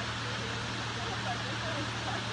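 Steady hum of an idling vehicle engine under a constant hiss, with faint indistinct voices.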